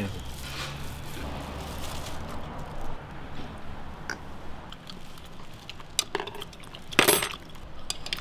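Eating sounds at a table: light clinks of glasses, dishes and chopsticks, with a sharper, louder clink about seven seconds in.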